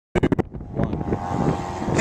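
Wind noise on the camera microphone, opening with four quick sharp knocks in the first half-second.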